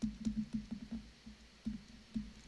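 Faint, irregular soft taps and ticks of a stylus writing on a tablet.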